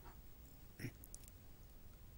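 Near silence: studio room tone with a low hum. There is one brief faint sound a little under a second in and a couple of faint ticks just after it.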